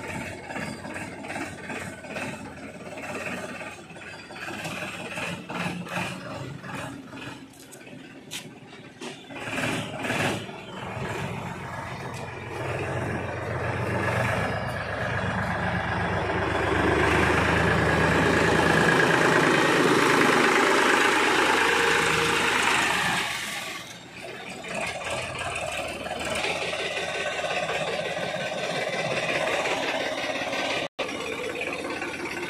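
Escorts Powertrac tractor's diesel engine running, with short knocks and rattles through the first ten seconds or so. It grows much louder for about ten seconds in the middle, then drops back suddenly and runs on more quietly near the end.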